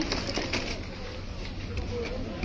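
Faint bird cooing over a low background murmur, a few short held calls.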